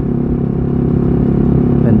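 Motorcycle engine running at steady revs while riding, with wind rumbling on the microphone.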